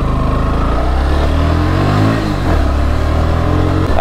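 Motorcycle engine running under way, its pitch sinking, then climbing about halfway through as the throttle opens, and dropping sharply just before the end.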